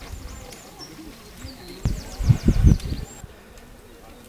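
Songbirds singing in short, high trilled phrases, with faint voices in the background; a few loud, low thumps come about two seconds in.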